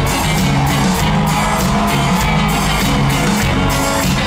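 Live rock band playing loud over an arena PA, with electric guitar and a steady drum beat, recorded from within the crowd.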